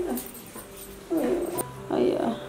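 A woman moaning in pain, short groans that fall in pitch, one about a second in and another near the end, over soft background music with held notes.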